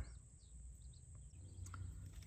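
Quiet outdoor ambience with a few faint, distant bird chirps.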